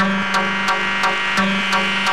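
Techno music from a DJ mix, with a sharp percussive hit about three times a second over a repeating synth line.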